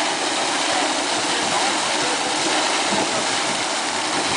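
Fountain jet spraying and falling into a shallow pool, a steady rush of water.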